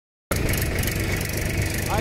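A tractor's diesel engine running steadily as the tractor is driven.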